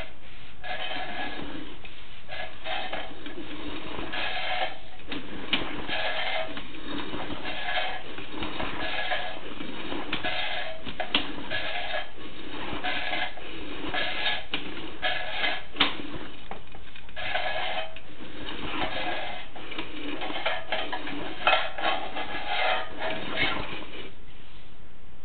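Sewer inspection camera's push cable being pulled back out through a drain pipe: repeated scraping and rubbing strokes in a ragged rhythm, with a few sharp clicks.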